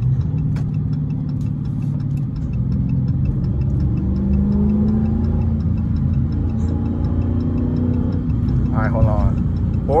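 Dodge Charger SRT 392's 6.4-litre HEMI V8 cruising at light throttle, heard inside the cabin as a steady low drone that rises a little in pitch around the middle.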